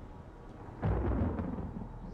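A roll of thunder: a deep rumble that starts suddenly just under a second in and slowly fades away.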